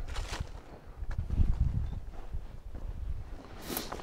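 Footsteps and rustling on grass and dry leaves, with an irregular low rumble.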